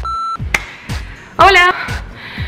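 A short, steady electronic beep as a camcorder-style record cue, lasting about a third of a second at the start, over background music with a steady beat.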